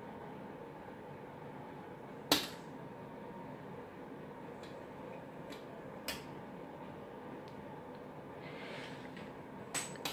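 Light handling clicks from a small bead loom being strung with thread, over a faint steady hum. One sharp click comes about two seconds in, another near the middle, and a few fainter ticks follow.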